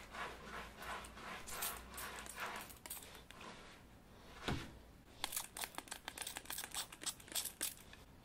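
Plastic trigger spray bottle misting water onto a scar transfer in a quick series of sprays, wetting it to release it from its backing paper. After a single sharp knock about halfway through, a dense run of crisp paper crinkling and tearing follows as the backing paper is handled.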